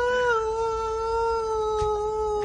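One long held note in a voice, steady and sinking slightly in pitch.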